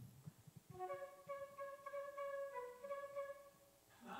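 Solo flute playing a short run of notes, some clipped and some held, beginning just under a second in and stopping shortly before the end. It is a passage that imitates a djembe drum tapping out Morse code for the word 'unity'. A few soft low knocks come just before the notes.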